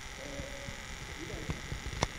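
Small zoom motor of the recording camera whining steadily at a high pitch while the lens zooms in, over faint voices and a few small knocks from the hall.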